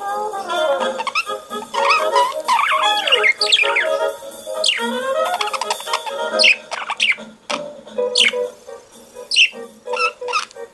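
Budgerigar chirping and warbling along with brass-led instrumental music from a record, its calls ending in several sharp, quick downward-sweeping chirps in the second half.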